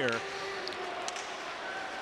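Ice hockey arena ambience: a steady crowd murmur, with a few faint clicks from play on the ice about a third of the way in.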